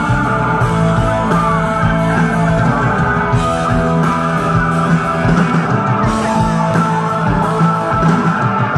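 A live rock band playing loudly through a PA: electric guitars over bass and drums, heard from the audience.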